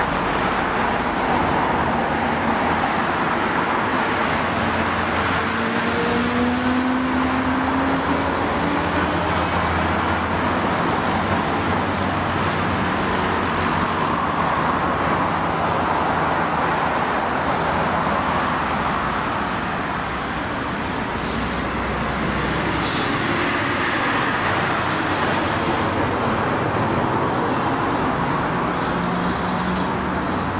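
Steady traffic noise from cars passing on a wide multi-lane city road. About six to nine seconds in, one vehicle's engine note rises in pitch as it accelerates.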